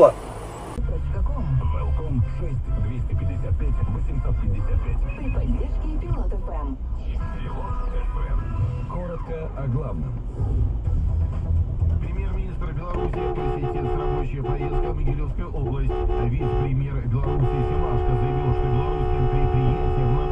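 Low, steady engine and road rumble heard from inside a car. In the last third come three long, sustained car horn blasts, each lasting a second or more.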